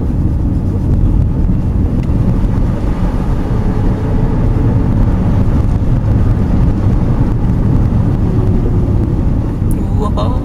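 Car driving on a paved road, heard from inside the cabin: a steady, loud low rumble of tyres and engine, with some wind noise.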